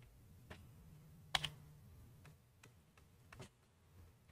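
Four faint, sparse clicks of computer keys, the loudest about a second and a half in.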